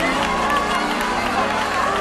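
Live gospel choir recording: voices shouting and wailing over sustained held chords, with crowd noise from the congregation.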